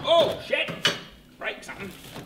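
A brief wordless vocal sound from a man, then a few sharp knocks as a boxed battery pack is lifted out of a wooden shipping crate, its case bumping the wood.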